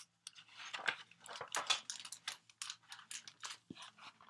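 Paper pages of a hardcover picture book being flipped and handled: a run of short crackly rustles, with a soft knock near the end.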